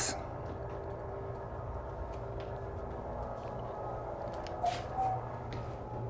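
Lecture-room tone: a steady low hum with a few faint clicks, and a soft bump a little before five seconds in.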